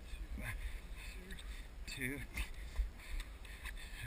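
A voice quietly counting "three, two" over a low rumble, with a few light knocks.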